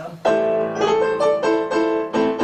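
Digital piano playing a string of chords, starting a moment in and struck again several times a second, as a newly selected voice setting is tried out.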